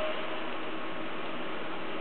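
Steady hiss while the IBM ThinkPad R32 laptop powers on, with the end of its single steady power-on beep cutting off right at the start.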